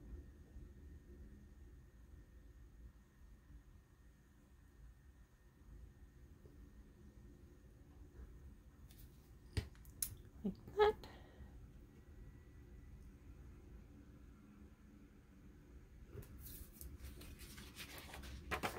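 Quiet room tone while paper is handled and glued on a cutting mat, with a few light clicks and taps about ten seconds in and a burst of paper rustling and handling near the end.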